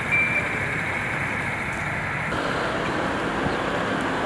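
City street ambience: steady traffic noise, with a short high beep just after the start. The background changes abruptly about two seconds in.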